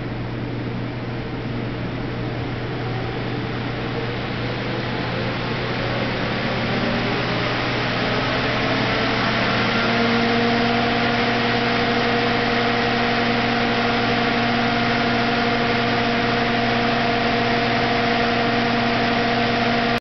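Electric engine cooling fan (twin radiator fans in a shroud) blowing steadily. It grows louder over the first ten seconds or so, then holds at full speed with a clear steady hum on top of the rush of air, echoing in a metal-walled chamber.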